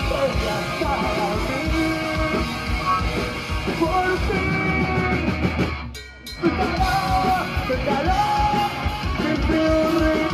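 Live punk rock band playing: distorted electric guitars, bass and drums under shouted singing. About six seconds in the band stops for roughly half a second, then comes back in all together.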